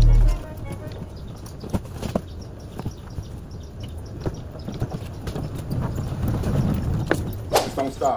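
A loaded hand truck of moving boxes rolling over a sidewalk, its wheels rumbling with scattered clacks and knocks. There are a few louder knocks near the end. Background music cuts off just as the sound begins.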